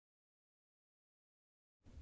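Near silence: the soundtrack is dead silent, with faint room tone starting just at the end.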